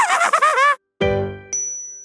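Logo sting: a short pitch-swooping phrase, then about a second in a bright ding that rings and fades away. About halfway through the ring, a thin, high sparkle tone is added.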